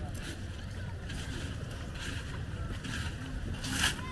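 Open-air riverbank ambience: a steady low wind rumble on the microphone, with faint distant voices of people in the background and a brief noisy burst just before the end.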